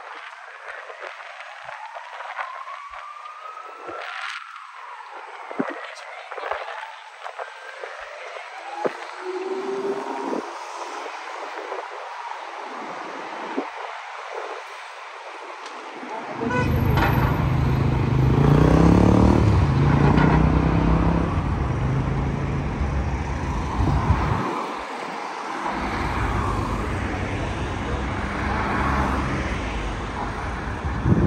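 Busy city street with passers-by talking and road traffic. From about halfway a large vehicle's engine runs loudly close by. It drops away briefly, then returns.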